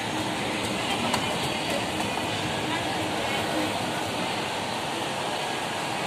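Steady running noise of a Hitachi escalator, its moving steps and handrail, under an even background of mall chatter.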